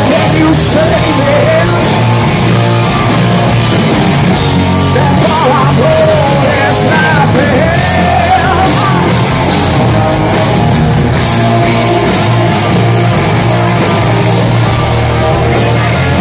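Hard rock band playing live at full volume, with a lead electric guitar solo whose notes bend up and down over the drums and bass.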